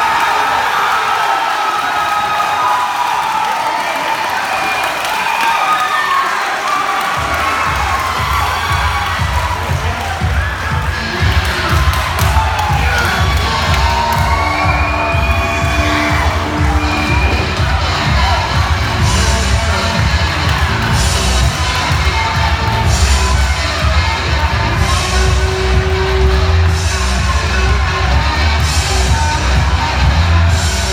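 Crowd cheering and shouting at the end of a fight by submission. About seven seconds in, loud music with a heavy bass beat starts and plays on under the crowd noise.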